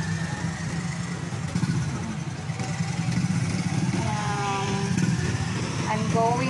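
Street traffic dominated by motorcycle engines running and passing, a steady low engine drone.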